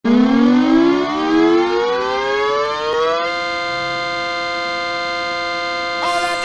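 Hockey goal horn, the recorded horn credited as the New York Yankees horn: one loud horn tone that rises steadily in pitch for about three seconds, then holds a single steady note.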